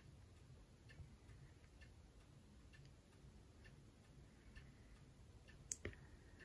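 Near silence: room tone with faint, even ticks about once a second, and one sharper click near the end.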